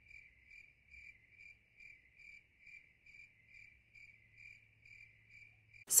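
Faint cricket chirping, one even pulse about twice a second, over otherwise dead-silent audio. It is likely an edited-in "crickets" sound effect filling a silent pause.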